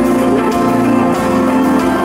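Live pop band music through the stage sound system, with long steady held notes.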